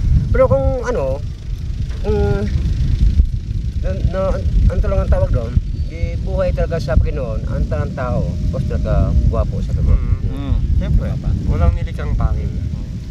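Voices talking off and on over a steady low rumble of wind on the microphone in an open field.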